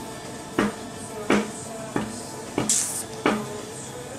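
Things being moved about in a kitchen cupboard: about five sharp knocks, roughly one every 0.7 seconds, with a brief hiss near three seconds in.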